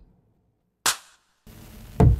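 Drum clip from a chillstep loop pack playing in the Launchpad iPad app: heavy electronic drum hits about a second apart, each dying away quickly, with a faint steady sound coming in near the end. The clip has started on the beat, having waited for the app's clock to come round.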